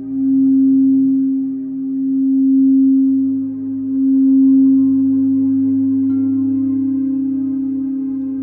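Singing bowl sounding one steady tone that swells and eases about every two seconds as it is played around the rim. A light tap about six seconds in lifts the tone slightly, and the bowl then rings on, slowly fading.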